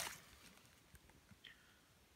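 Near silence, with a few faint light taps and rustles from a firework cake being handled and turned over.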